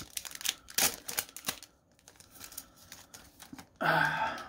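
A trading-card pack's foil wrapper being torn open and crinkled: a quick run of crackles in the first second and a half, then fainter rustling.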